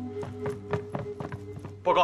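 Footsteps of several people in boots hurrying across a wooden floor, quick irregular steps, over background score holding a steady low tone. A man's shout comes in right at the end.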